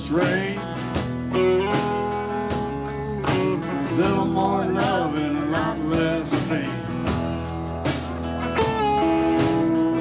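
Live Americana-rock band playing, with electric guitars over bass and drums and a lead line that bends up and down in pitch.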